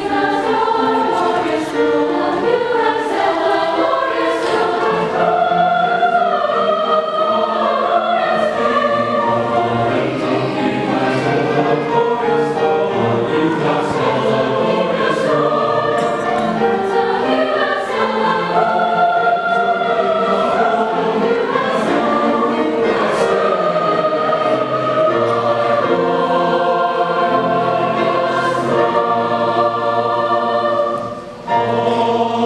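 Large mixed choir of men and women singing in several parts, moving through long held chords.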